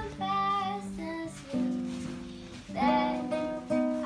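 A girl singing to a strummed acoustic guitar, her voice coming in two short phrases over the chords.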